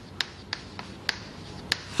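Chalk clicking and scratching against a chalkboard as a word is hand-written: a series of about six sharp taps, one for each stroke.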